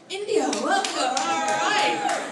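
A small crowd clapping, with voices calling out and one long held cheer over the claps.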